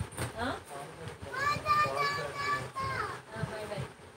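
A child's high-pitched voice in the background: a short sliding call, then one long drawn-out call about halfway through, followed by a few shorter vocal sounds.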